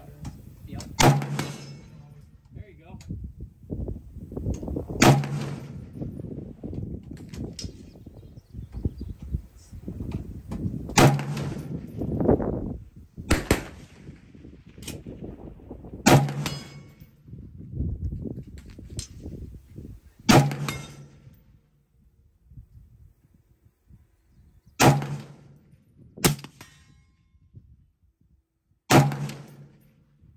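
SCAR 17S rifle in 7.62x51mm firing single shots, about nine of them a few seconds apart, each a sharp crack with a short ring after it. A low rumble fills the gaps between shots until about two thirds of the way through.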